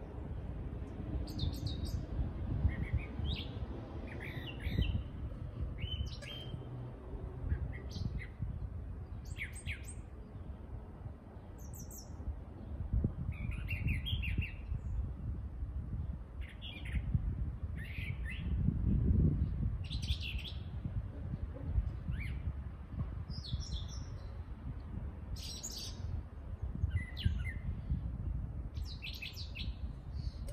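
Wild birds chirping in the trees: many short, high chirps and calls scattered through the whole stretch, over a steady low rumble that swells about two-thirds of the way through.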